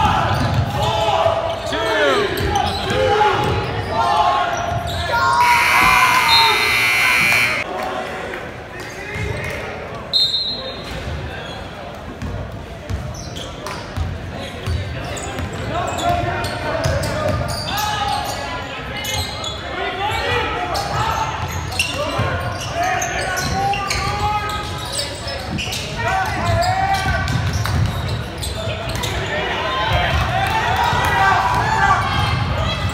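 Basketball game in a gym: the ball bouncing on the hardwood and players and spectators shouting, echoing in the hall. A loud high blast of a referee's whistle sounds about six seconds in.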